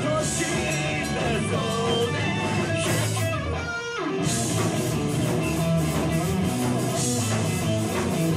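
Live rock band playing with distorted electric guitars, bass and drums. A little before four seconds in the bass and drums drop out for a moment, then the full band comes back in.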